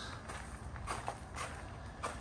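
A few faint footsteps on gravel, over a low steady rumble.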